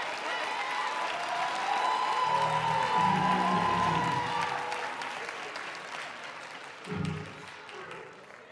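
Church congregation and choir applauding, swelling to its loudest about three seconds in and then dying away.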